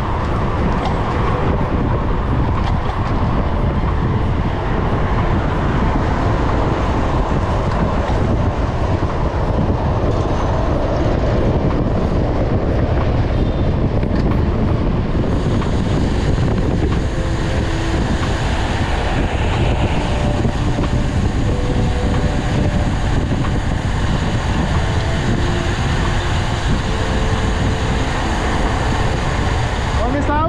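Steady wind and road noise on a handlebar-mounted camera during a road-bike ride in traffic. About halfway through, a bus engine running close alongside adds to it.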